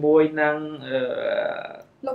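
A voice speaking. The last sound is drawn out for about a second and then cuts off suddenly.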